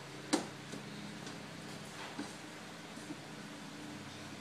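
A spoon stirring macaroni and cheese in a metal pot, with one sharp knock against the pot about a third of a second in and a few lighter clicks after, over a steady low hum.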